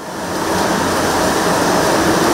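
Tannery paddle machine turning in a vat, a steady mechanical rumble mixed with the rush and splash of churning liquid. It fades in over the first half second.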